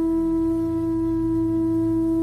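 Bansuri (Indian bamboo flute) holding one long steady note over a low drone.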